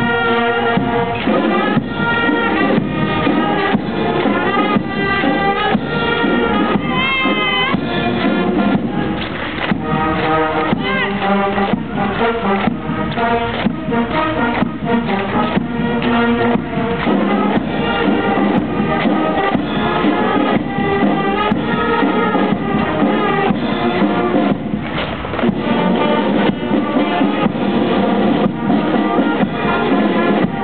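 A brass band playing a march, with held brass notes over a steady drum beat.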